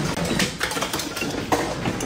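Household objects clinking and clattering in a house just after an earthquake, with a few sharp knocks over a steady rushing noise.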